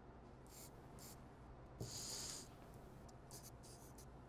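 Faint pencil strokes scratching on paper: a few short strokes and a longer one about two seconds in, over a low steady room hum.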